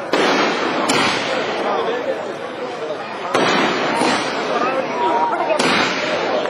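Aerial fireworks going off overhead: four sudden bangs, at the start, about a second in, about three and a half seconds in and near the end, each trailing off into a few seconds of noisy crackle.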